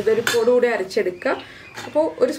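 A woman talking, with a few light clinks of a steel spoon and stainless-steel kitchenware.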